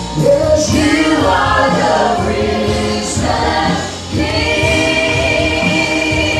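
Church praise team of men and women singing a gospel praise song with a live band. The last two seconds end on a long held note.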